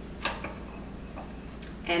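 A single sharp click, the glass measuring cup knocking against the crock pot as it is turned round in its water bath, then a couple of faint small taps over a low steady hum.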